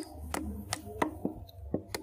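Curved billhook blade chopping at a short piece of green bamboo held upright on a wooden block: a steady run of quick strikes, about three a second.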